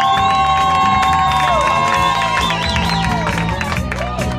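Live band music: a long held high note that bends in pitch through the first half, over a steady bass line and drums.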